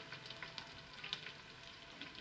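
Palak kofte deep-frying in oil in a karahi: a faint, steady sizzle with a few small crackles.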